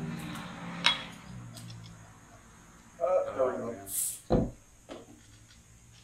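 Beer bottle and glass being handled. There is a sharp glassy clink about a second in, then a brief hiss and a knock around four seconds, with a small click after.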